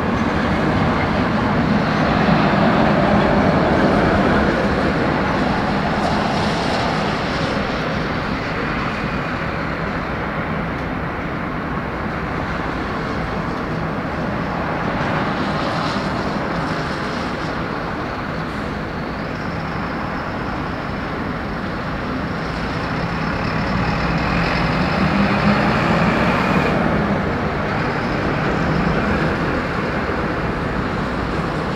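Airbus A380's four jet engines at takeoff thrust during the takeoff roll: a steady, loud rumble of jet noise that swells about two seconds in and again near the end.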